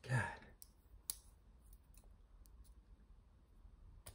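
Gareth Bull Shamwari front-flipper folding knife with a Gambler pivot, its blade and lock clicking as it is flipped and closed against a strong detent: one sharp click about a second in, then several faint ticks.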